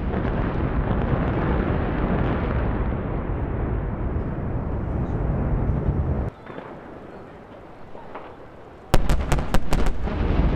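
Dynamite blasts on a rocky hillside. A loud, low rumble runs for about six seconds, drops to a quieter lull, then comes a quick volley of about six sharp bangs near the end.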